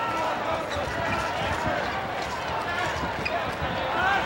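A handball bouncing repeatedly on an indoor court floor during play, over the steady murmur and voices of a large arena crowd.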